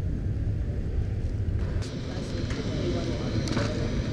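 A steady low outdoor rumble with faint voices in the background.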